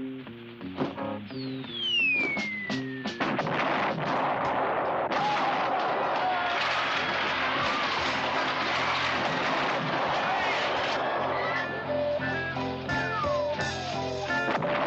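Film score music under battle sound effects: a descending whistle about a second in with sharp bangs, then a dense, noisy din, and another descending whistle near the end.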